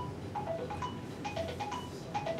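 Mobile phone ringtone: a quick melody of short, chiming notes that steps among a few pitches and repeats.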